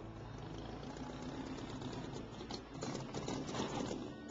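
Car tyres rolling and crunching over gravel as a car pulls in, crackling more densely in the second half, with soft background music underneath.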